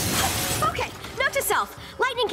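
A cartoon crash sound effect, noisy and full-range, fades out in the first half second as a burst of smoke and sparks clears. Short wordless voice sounds follow.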